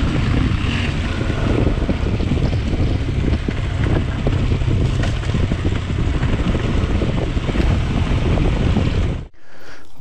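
Adventure motorcycle running at low trail speed on a dirt track, with wind buffeting the camera microphone. The sound cuts off suddenly near the end.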